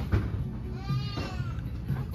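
A person's drawn-out wordless vocal sound, rising and then falling in pitch, held for about half a second, a little under a second in.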